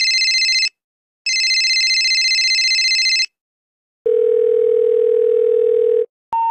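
Electronic telephone ringer trilling twice, each ring about two seconds long with a short gap, a warbling pair of high tones. After a pause, a click and a steady low telephone dial tone for about two seconds.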